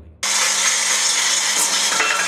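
A small belt-driven workshop machine cutting a strip of reed bamboo held against its spinning wheel: a steady, even rasping noise that starts suddenly and cuts off suddenly, with a faint low motor hum beneath it.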